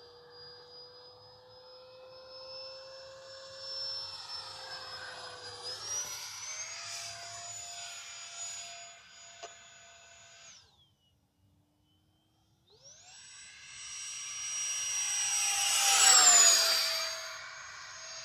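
E-Flite Habu SS 70 mm electric ducted-fan jet on a 6S battery flying overhead: a steady, high fan whine that steps up in pitch about six seconds in. It breaks off for about two seconds, then comes back and swells to its loudest as the jet passes, the pitch dropping as it goes by.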